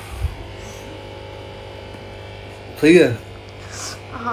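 Steady low electrical mains hum, with a short soft thump just after the start and a brief voice about three seconds in.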